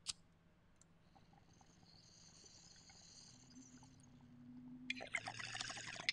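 A lighter clicks once, then a glass water bong is drawn on: faint hiss, then bubbling water that builds over the last second or two.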